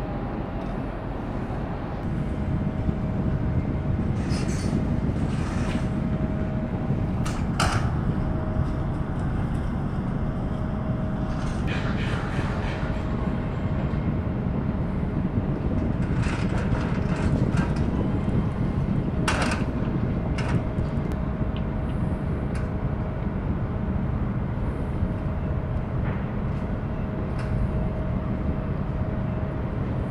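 Steady low machinery rumble with a faint steady whine, broken by a few sharp knocks and clanks.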